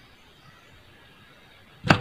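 Faint scraping of a pencil compass drawing arcs on paper.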